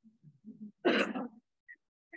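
A person clearing their throat once, about a second in, a short rough sound with two peaks, after some faint low murmuring.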